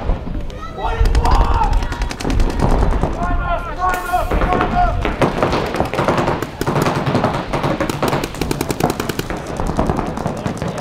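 Paintball markers firing in rapid strings of shots, several guns going at once, with voices calling out over the firing.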